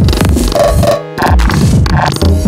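Live-coded electronic music from Sonic Pi: chopped drum samples, including house kick drums, run through a pitch-shift effect over a dense noisy texture, with repeated downward pitch sweeps in the low end. The music drops out briefly about a second in.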